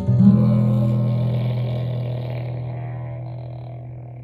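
A final guitar chord strummed once just after the start and left to ring, fading steadily away.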